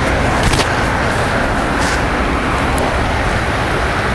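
Steady rushing outdoor street noise, with a few faint ticks.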